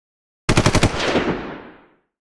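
A short burst of machine-gun fire: a rapid string of about seven shots lasting under half a second, followed by a long echo that fades away.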